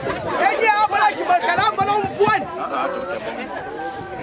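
A crowd of people talking and calling out over one another: lively overlapping chatter.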